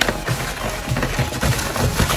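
Background music, with small paper slips rustling and crinkling as they are shuffled together by hand.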